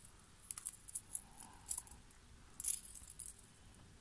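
Small metal fishing tackle clinking faintly: a split ring worked open with split-ring opener pliers, the snap swivel jingling against it in a string of light, scattered clicks.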